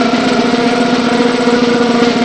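Loud, steady buzzing drone with a low pitched hum and its overtones, holding unchanged throughout.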